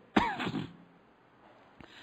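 A man clearing his throat once, briefly, just after the start, followed by a pause and a faint click near the end.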